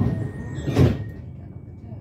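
A commuter train's sliding doors shutting: one short, loud thump with a hiss a little under a second in. After it the background rumble and a steady high tone turn quieter.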